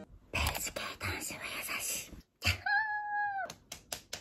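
A breathy, hissing vocal sound, then a single high, level cry lasting about a second near the middle, followed by a few light clicks.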